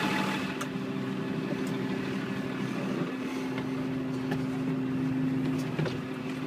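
New Holland LW110 wheel loader's diesel engine idling steadily, with a few light knocks.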